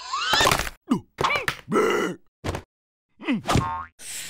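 Cartoon sound effects mixed with a cartoon character's wordless grunts and squeals, in about six short bursts with silences between, several sliding up or down in pitch.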